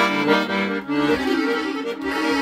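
Italian Petosa 4/4 piano accordion being played: a quick melody on the treble keys over bass notes from the left-hand buttons.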